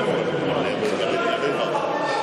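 Indistinct voices of people talking in a sports hall, no clear words.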